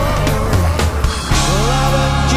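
Live progressive rock band playing an instrumental passage: electric guitars, bass, drums and keyboards, with lead notes bending and gliding in pitch through the middle.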